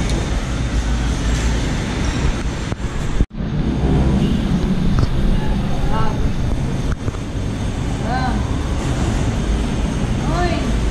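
Steady low rumble of background noise in a dining room, with faint voices now and then. The sound cuts out for a moment about three seconds in.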